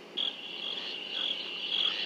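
Crickets chirping in a night-time cartoon soundtrack ambience: a steady high trill with a slight regular pulse, starting just after the start.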